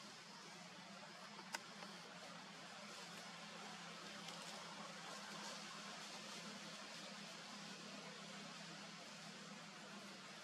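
Faint, steady background hiss with a low hum underneath, and one sharp click about a second and a half in.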